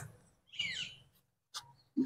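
A short bird call about half a second in, a high chirp falling in pitch.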